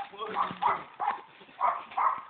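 A person's voice in short, separate bursts, about five in two seconds.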